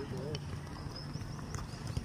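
A football being juggled: a couple of light knocks of the ball against head and foot over steady outdoor background noise.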